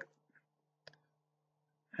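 A single computer mouse click about a second in, over a faint steady low hum.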